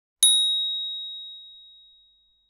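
A single bright bell ding from an animated subscribe-button and notification-bell sound effect. It strikes about a fifth of a second in and rings out, fading away over about two seconds.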